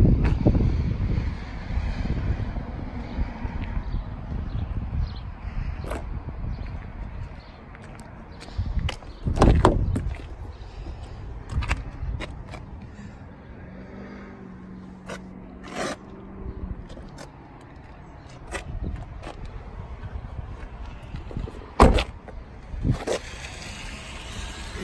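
Car doors of a 2016 Kia Optima being opened and shut: a few separate thumps and clicks spread out over the stretch, over low handling and wind rumble on a handheld microphone.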